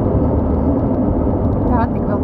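Steady in-cabin driving noise of a 2001 Audi A4 B6 with the 2.0 petrol four-cylinder at road speed: an even low rumble of engine and tyres. A brief bit of voice comes in near the end.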